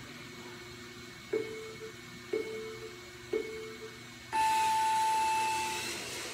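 Race start countdown beeps: three short beeps a second apart, then one long, higher beep lasting about a second and a half that signals the start of the run.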